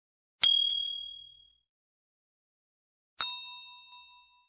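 Two ding sound effects from a subscribe-button animation, about three seconds apart: each is a sharp strike that rings out and fades within about a second. The first is louder and higher; the second has a lower tone in it.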